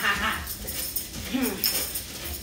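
A dog whining in short whimpers that slide up and down in pitch.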